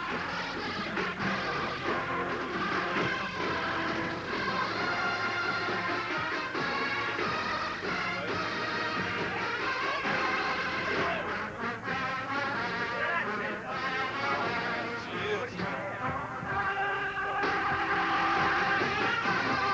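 College marching band playing a halftime show on a football field, full ensemble sound, heard through a worn VHS copy of a TV broadcast.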